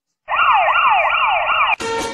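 Siren sounding in a fast repeating yelp, about three rising sweeps a second. It starts after a brief silence and cuts off suddenly near the end.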